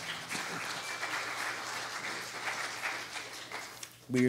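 Congregation applauding: a dense patter of many hand claps that dies away near the end.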